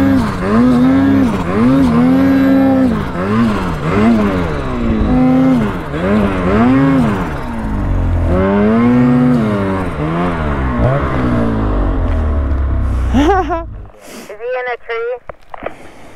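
Ski-Doo 850 two-stroke twin snowmobile engine revving up and down in quick, repeated throttle bursts, pushing through deep powder. The engine drops away about thirteen seconds in and voices follow.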